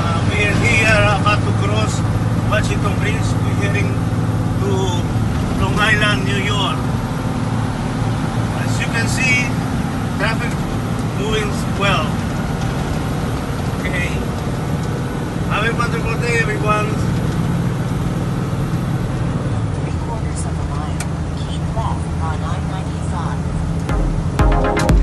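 Steady engine and road drone heard from inside a vehicle cruising on a highway, with indistinct voices coming through now and then.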